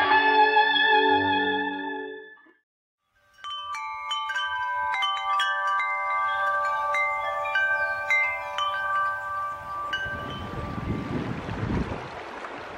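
A distorted electric guitar rings out and fades over the first two seconds. After a short silence, hand-played chimes are struck again and again, their bright metal tones ringing and overlapping for about seven seconds. They fade under wind noise on the microphone and moving water near the end.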